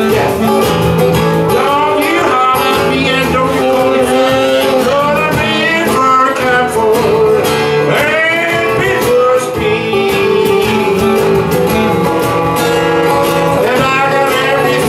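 Live acoustic blues: a steadily strummed acoustic guitar with a saxophone playing wavering melodic lines, and a man singing at times.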